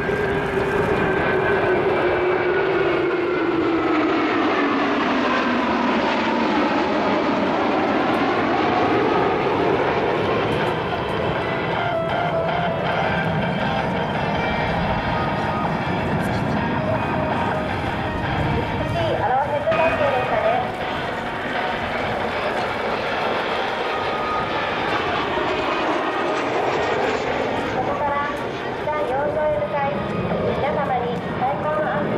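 Jet engine noise from a formation of four JASDF F-15 twin-engine fighters flying past. The engine whine falls in pitch over the first several seconds as the jets go by, then settles into steady jet noise.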